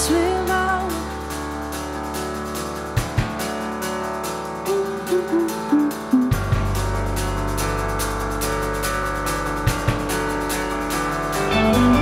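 Live band playing a song on keyboard, electric guitars and drum kit, with a steady beat. The low end drops out for a few seconds and comes back in strongly about halfway through.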